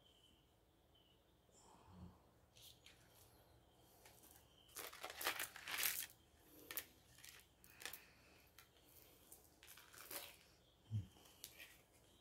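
Faint rustling and crinkling with light clicks as small stones are handled and set down on a grid, loudest about five to six seconds in and again near ten seconds, with a soft low thump near the end.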